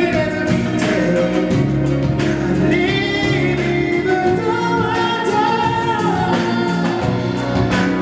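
Live band music with a male lead singer holding long sung notes over the accompaniment and percussion.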